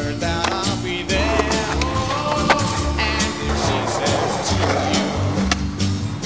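Instrumental stretch of a rock song with a steady bass beat. Over it come sharp clacks of a skateboard on concrete and metal, the loudest about halfway through.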